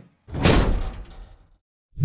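A single deep, rushing burst of noise that swells about a third of a second in and fades away over about a second.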